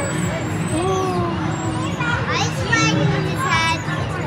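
Children's high-pitched voices calling out over a busy hall's chatter, with a steady low hum underneath.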